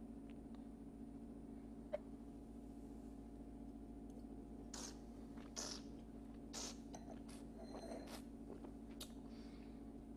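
A man tasting wine: a faint click about two seconds in, then a run of short, soft sips and slurps, about seven, from about halfway through. A steady low hum lies under it all.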